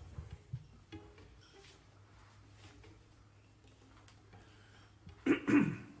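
A quiet room with faint small handling noises and a low steady hum, then a person clears their throat loudly, close to the microphone, near the end.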